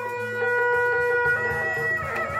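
Sundanese traditional music: a reed wind instrument holds one long note over drumming, the drum strokes coming back in a little under a second in.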